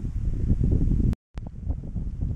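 Wind buffeting the microphone: a loud, low, unpitched rumble that drops out completely for a moment a little over a second in, then comes back.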